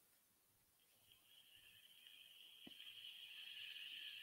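Near silence: room tone, with a faint steady high-pitched tone that comes in about a second in, and one faint click later.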